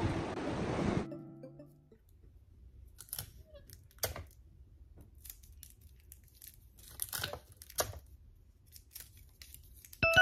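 A rushing surf noise cuts off about a second in. Then come quiet handling sounds: scattered crinkles of plastic wrap and tulle and a few small sharp clicks as a wooden stick and the wrapping are worked by hand.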